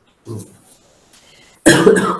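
A person coughs once, loudly and suddenly, near the end, heard over a video-call connection; a faint short sound comes just before it, about a third of a second in.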